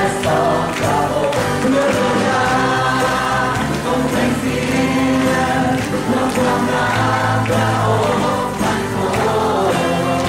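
Live worship song: a man singing lead with other voices joining in, over acoustic guitar.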